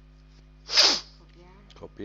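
A person sneezing once: a single short, loud burst of breath a little under a second in.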